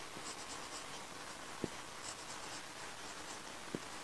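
Felt-tip marker writing on a whiteboard: short, faint squeaky scratches of the pen tip in several separate strokes, with two soft knocks in between.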